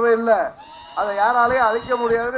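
A man's amplified voice calling out over a microphone in long, drawn-out phrases: one ends about half a second in and the next begins about a second in.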